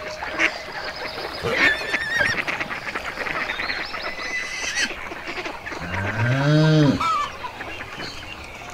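Animal calls: scattered short, high, wavering calls, and one longer low call about six seconds in that rises and then falls in pitch, the loudest sound here.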